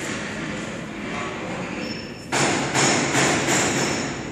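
Horizontal flow-wrap packing machine running with a steady mechanical clatter. About two seconds in it gets louder and pulses rhythmically, roughly two to three times a second.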